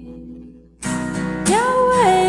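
A woman singing to her own acoustic guitar. A strummed chord fades, a fresh strum comes in just under a second in, and her voice enters about a second and a half in on a note that slides up and holds.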